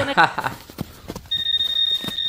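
A few sharp clicks, then a steady high-pitched electronic beep that starts a little past halfway and holds.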